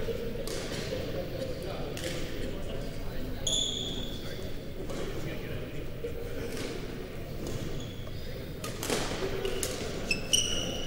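Background chatter echoing in a large gym hall, broken by a few sharp knocks. A sneaker squeaks on the court floor about three and a half seconds in.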